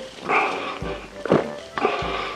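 A person gulping beer straight from a can, with loud swallows repeating about once a second, over background music.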